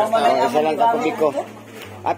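People talking, mostly in the first second and a half, then a quieter moment.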